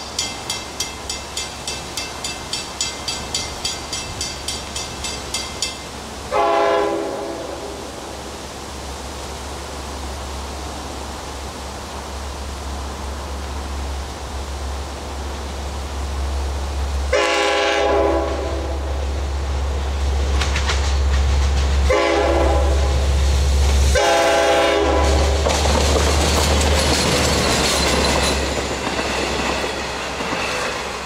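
A grade-crossing warning bell rings about two and a half times a second and stops about six seconds in. An approaching Long Island Rail Road diesel commuter train then sounds its horn in four blasts of about a second each, one early and three close together past the middle. Its engine rumble and wheel noise build to a loud pass in the last third.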